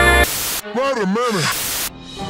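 Music cuts off into a loud hiss of static. Through the static a voice warbles up and down twice. The static stops abruptly just before the end.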